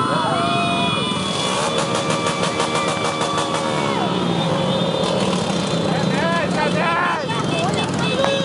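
Many small motorcycles running at low speed in a crowded procession, amid people shouting and cheering. A nearby bike revs from about a second and a half in and eases off around four seconds.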